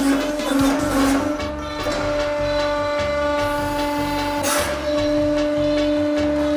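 Hydraulic press running with a steady, even-pitched whine as its ram presses an aluminium-foil pan in a die, heard over background music with a beat. There is a brief burst of noise about four and a half seconds in.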